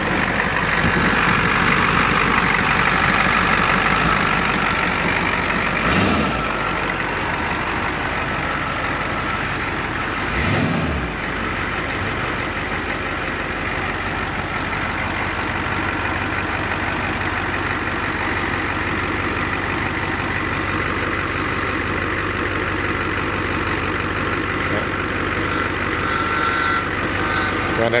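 Ford E-350 bus engine idling steadily at its first run after sitting for months, with two brief thumps, one about six seconds in and one about ten seconds in.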